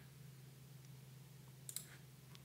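Near silence with a faint steady hum, broken once, late on, by a single quiet computer-mouse click.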